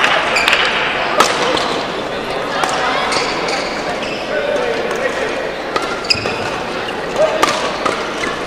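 Badminton hall ambience: scattered sharp clicks of rackets striking shuttlecocks from play around the hall, the loudest about a second in and twice near the end, over voices, all echoing in a large hall.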